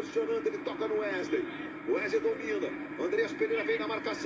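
Portuguese football match commentary from the TV broadcast playing in the background: a commentator talking continuously in a fairly high-pitched voice.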